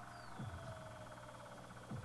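Faint steady hum and hiss of the recording setup: room tone between the words of a voice-over.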